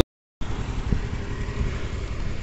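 A moment of dead silence at an edit cut, then a steady low rumble of outdoor background noise.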